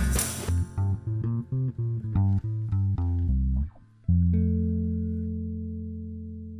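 Song ending: the drums and tambourine stop about half a second in, a run of picked bass and guitar notes follows, then after a brief pause a final low chord rings out and slowly fades.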